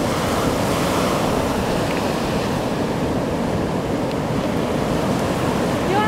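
Ocean surf breaking and washing onto a sandy beach, a steady rush with no let-up.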